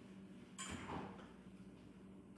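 Quiet room tone with a faint steady hum and one faint, brief scraping sound about half a second in.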